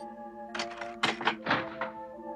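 Sound effect of a key going into a door lock and turning: a quick run of about six clicks and knocks. Soft background music with long held notes runs beneath.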